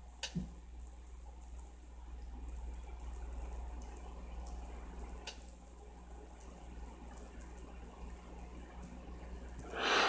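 Quiet room tone with a steady low hum, a faint rise and fall of soft noise in the middle, and two light clicks, one at the start and one about five seconds in.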